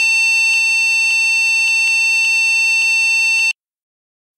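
The BIOS beeper of a PCM-9375 AMD Geode single-board computer sounding its memory-error code with the RAM removed: a loud, high-pitched beep repeated about every half second with only a brief tick between beeps. It stops suddenly after about three and a half seconds.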